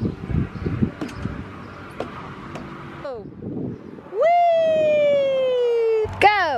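A child's long shout: one held call that starts about four seconds in and slowly falls in pitch for about two seconds. Before it, scattered light knocks and scuffs.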